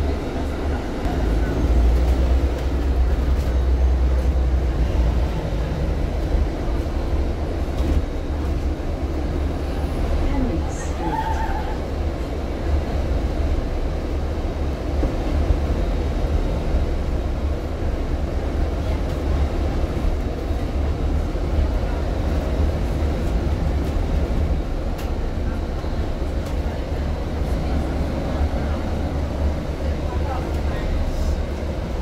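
Cabin noise on board a moving double-decker bus: a steady low engine and road rumble, heavier for a few seconds about a second in.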